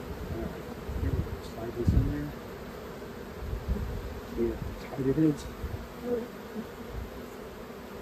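Honey bees buzzing in a steady hum over an open hive, the colony spread across the exposed top bars. A few soft, low bumps are heard in the first half.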